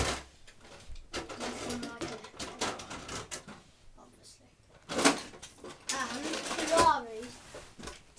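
A child's voice, indistinct and low, with a sharp knock about five seconds in and a falling vocal sound soon after.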